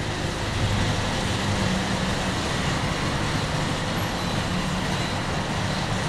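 Steady outdoor traffic and vehicle rumble, with a constant low hum underneath.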